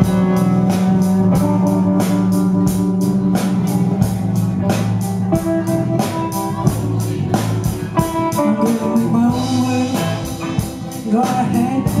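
Live rock band playing an instrumental intro on electric guitars and drum kit, with a steady beat. A woman's singing comes in near the end.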